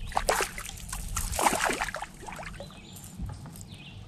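A small fish splashing and thrashing at the water's surface beside a canoe as it is reeled in, with irregular splashes that are busiest in the first two seconds and then die down.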